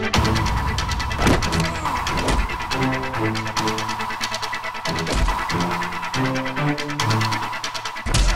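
Action film background score with a driving low beat, overlaid by several sharp fight-impact sound effects, the strongest about a second in and about five seconds in.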